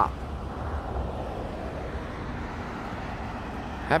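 Road traffic noise along a street: an even hiss of passing vehicles over a low rumble.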